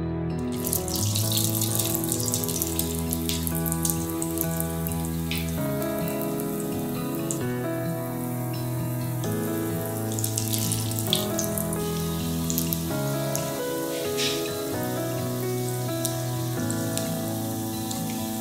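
Patties frying in shallow hot oil in a frying pan: a steady sizzle with crackles and spits. Background music with held chords plays underneath.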